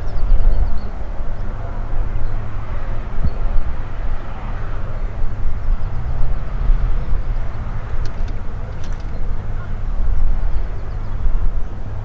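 Tecnam P2002-JF light aircraft's Rotax 912 four-cylinder engine on approach to land, a steady low drone. Wind is buffeting the microphone.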